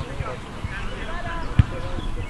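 Distant voices calling out across an outdoor football pitch, with one short dull low thump about one and a half seconds in.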